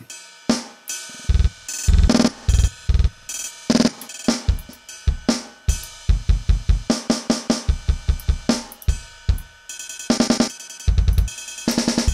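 Drum-kit loop played through Steinberg LoopMash FX, its one-quarter stutter effect chopping the beat into runs of rapid, evenly repeated hits. The stutter sounds different from one pass to the next as the plugin's grid resolution is switched.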